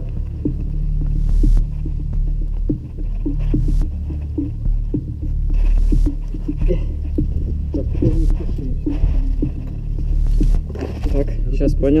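Hard breathing from someone rappelling down a rock face on a rope, about one breath every two seconds, over a steady low hum, with light knocks of rope and gear against the rock.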